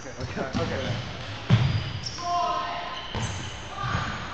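A few heavy thuds on a hardwood gym floor, the loudest about a second and a half in, with a brief squeal near the middle, ringing in a large hall amid background voices.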